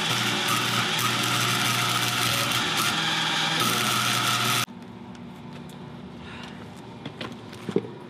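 MIG wire-feed welding arc crackling and hissing steadily as a bead is run on steel tubing, stopping abruptly about four and a half seconds in. Afterwards only faint clicks of handling are heard.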